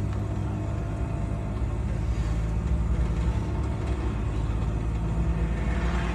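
Steady low rumble of a vehicle engine heard from inside its cab.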